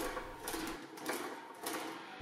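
A sheet-metal fender panel being rolled back and forth through an English wheel, the steel wheels running quietly over the metal with a few faint knocks. This is the planishing pass that smooths out the unevenness left from shaping the panel on a sandbag.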